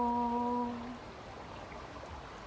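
A woman's unaccompanied voice holding the last note of a folk song at a steady pitch, ending about a second in, followed by faint steady background noise.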